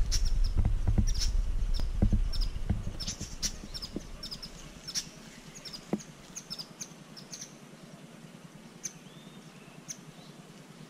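A colony of weaver birds chirping: many short, high calls, scattered and overlapping through the whole stretch. A low rumble on the microphone fills the first two to three seconds, then dies away.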